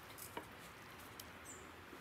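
Faint scraping and a few light ticks of a wooden spoon smoothing a mince mixture flat in a ceramic casserole dish, with a brief high chirp about one and a half seconds in.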